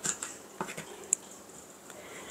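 Kitchen knife dicing cherry tomatoes on a wooden cutting board: a handful of soft, irregular taps of the blade through the tomato onto the board, one a little sharper about a second in.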